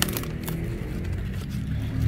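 A few crisp snaps of napa cabbage leaf stalks being broken off by hand, in the first half second, over a steady low motor hum.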